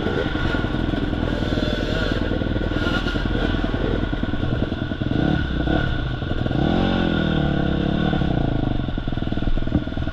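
Several off-road dirt bike engines running at low revs close by. About two-thirds of the way through, one engine revs up, holds for about a second and drops back.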